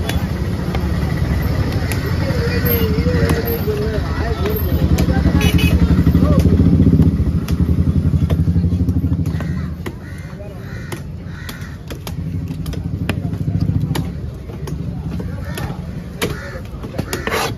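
A heavy knife chopping fish into chunks on a wooden log block, a short knock with each stroke, over a nearby engine running that is loudest in the middle and drops away about ten seconds in.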